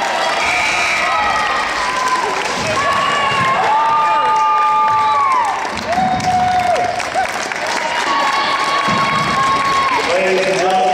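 Basketball crowd cheering and clapping, with several long shouts held for a second or more over the clapping. It is the cheer for a made free throw that brings up a player's 1000th point.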